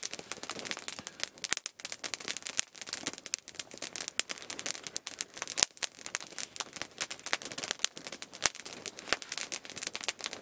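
Wood campfire crackling, with many sharp, irregular pops.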